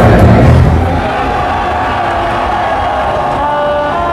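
Loud music cuts off about a second in. Then comes crowd noise at a live concert, with long held notes from the band's instruments starting to come in underneath.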